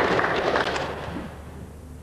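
Audience applause dying away over the first second or so, leaving the quiet hall.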